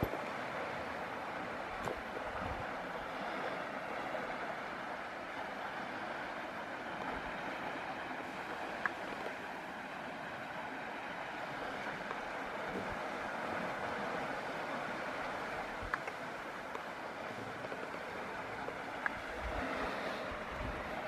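The flooding Tisza river rushing past in a steady, even wash of water noise, with a few faint ticks.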